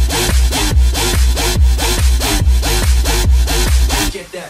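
Electronic club dance music: a fast, driving beat of about three strokes a second, a deep bass hit and a rasping synth tone falling in pitch on each stroke. The beat drops out at the very end.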